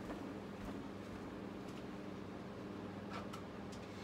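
Quiet room tone with a steady low hum and a few faint clicks and knocks of someone walking across the room and picking something up from a desk.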